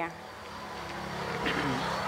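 Background noise of an open-air gathering that slowly grows louder, with faint voices and a steady low hum underneath.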